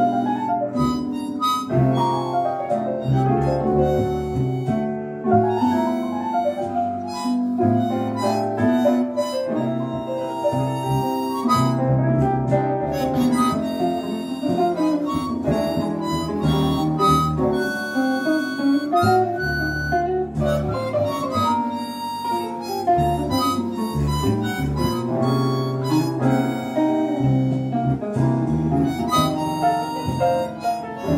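Harmonica playing a jazz melody, cupped in both hands, with a run of changing notes.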